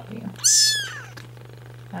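A 3½-week-old kitten mewing once, a loud, high-pitched cry about half a second long that rises and then falls in pitch. A steady low hum runs underneath.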